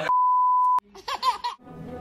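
A steady, high-pitched editing bleep, one pure tone lasting under a second, laid over and cutting off a speaker's words. A few short high sounds follow, then background music starts near the end.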